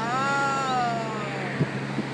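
A gull's single drawn-out call, rising slightly at first and then falling slowly in pitch over about a second and a half.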